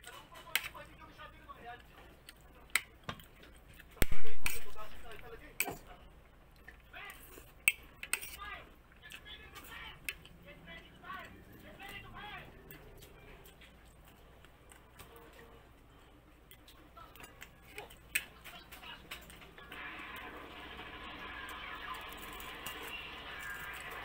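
Someone eating with a fork: scattered sharp clicks of the fork against a plate, with one loud knock about four seconds in. A steady hiss comes in near the end.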